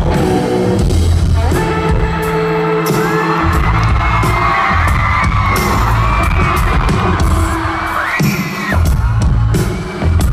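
Live rock band playing an instrumental break at full volume: a lead electric guitar line with bent, wavering notes over pounding drums and bass, heard from among an arena crowd with some cheering. The drums and bass drop out briefly twice, once near the start and again about eight seconds in.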